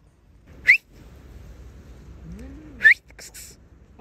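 An animal gives two short, high squeaks about two seconds apart, each rising sharply in pitch. Just before the second squeak there is a brief, fainter low sound that rises and falls.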